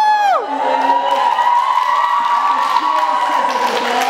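A young man's voice holding one long, high note into a microphone for about three seconds, the pitch creeping slightly upward and then easing. The audience cheers and whoops over it.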